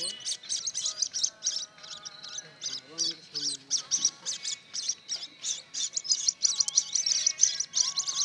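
Ducklings peeping, a rapid and continuous run of high-pitched peeps, several a second.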